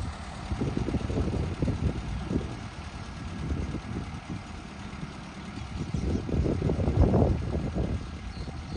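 Tractor engine running, with an uneven low rumble that swells briefly near the end.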